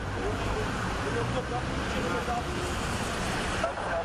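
Steady street traffic noise with indistinct voices of people nearby.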